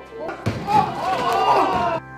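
A slam about half a second in, then a person's voice crying out, drawn out and bending in pitch.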